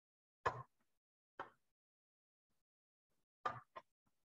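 Near silence, broken by four brief, soft noises: one about half a second in, one a second later, and two close together near the end.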